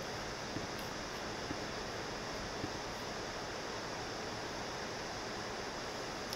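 Steady hiss of background room and microphone noise, with a few faint ticks in the first half.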